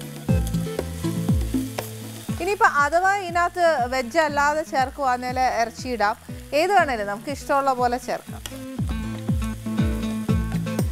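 Chopped onion and tomato sizzling in a non-stick kadai as a spatula stirs them, under louder background music with a steady beat and a wavering melodic line.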